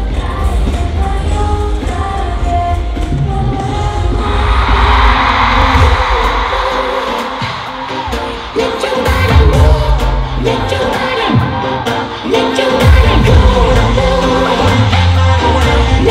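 Live pop music with a female voice singing over a bass-heavy beat; about four seconds in, a rush of crowd cheering swells over the music and fades, and the beat comes in heavier from about halfway.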